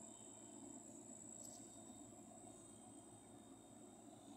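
Near silence with a faint, steady high-pitched insect chorus running unbroken, and a faint tick about one and a half seconds in.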